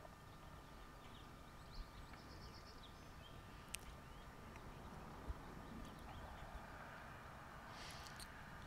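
Near silence: faint outdoor ambience with a few faint high chirps about two seconds in and a couple of light clicks around the middle.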